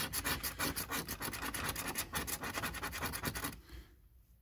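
A coin scraping the coating off a paper scratch card in rapid back-and-forth strokes, about seven a second, stopping shortly before the end.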